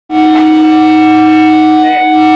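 Electric guitar feedback: a loud, steady held tone with a brief dip near the end.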